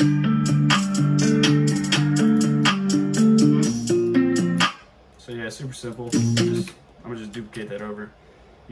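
Playback of a trap beat: a looping plucked guitar melody over quick hi-hats and drum hits. It stops abruptly a little before five seconds in, and a few short, quieter snatches follow.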